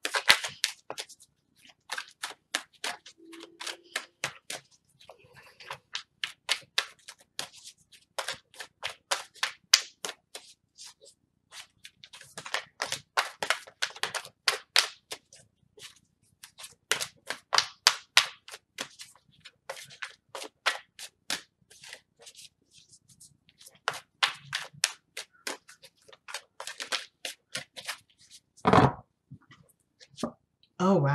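A tarot deck being shuffled by hand: quick runs of crisp card clicks and slaps lasting a second or few, with short pauses between them, and a louder thump near the end.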